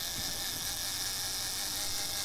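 A low, steady whirring hiss, strongest in the high pitches, with no change across the two seconds.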